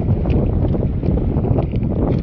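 Wind buffeting the microphone on an outrigger boat at sea: a loud, steady low rumble.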